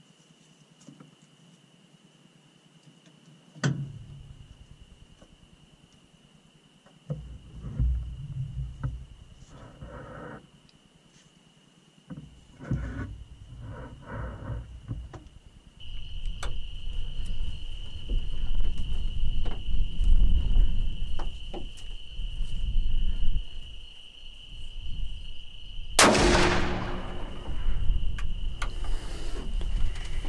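A single rifle shot near the end: one sharp crack with a ringing tail. It is the shot that drops a small feral hog.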